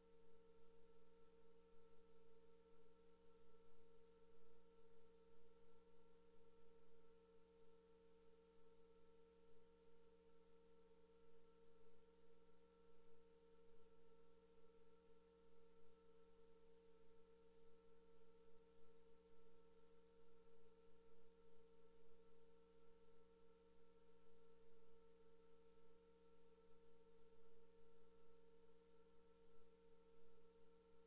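Near silence: a faint, steady electrical hum made of several fixed tones, with light hiss, in an idle audio feed.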